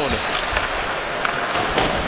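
Hockey arena ambience during live play: a steady crowd murmur with a few sharp clicks of sticks, puck and skates on the ice.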